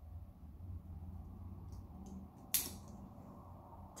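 Scissors cutting through a leather tassel strap, with one sharp snip about two and a half seconds in and fainter clicks of the blades before it, over low handling noise.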